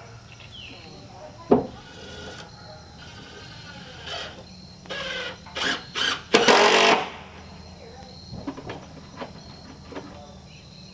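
A single sharp hammer blow on the wooden deck boards about one and a half seconds in, then a cordless drill running in several short bursts between about four and seven seconds, the last and longest one loudest, driving screws into the porch decking. A few light knocks follow near the end.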